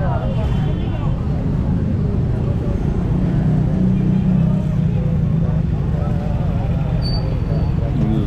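Busy street-market ambience: a steady low traffic rumble with people talking in the background. A brief high squeak sounds about seven seconds in.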